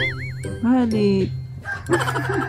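A rooster crowing: a long wavering call that then falls in pitch, over background music.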